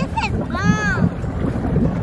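Wind buffeting the microphone over the lake, a steady low rumble, with a high voice that calls out once, rising and then falling in pitch, about half a second in.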